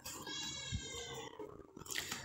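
A faint, high-pitched drawn-out cry lasting about a second, its pitch rising slightly and then falling, like an animal's call.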